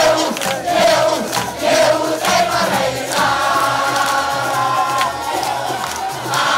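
A large crowd of supporters chanting and singing together, loud, with beats under the voices; a more sustained sung line comes in about halfway.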